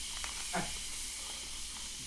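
Spray can giving off a steady hiss as it sprays a mist.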